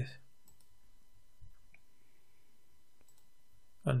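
A few faint, isolated clicks from a computer keyboard and mouse over low room hiss, as a file is saved and another editor tab is opened.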